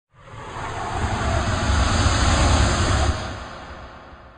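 Logo-intro whoosh sound effect: a rushing noise with a deep rumble that builds over the first two seconds, then fades away near the end.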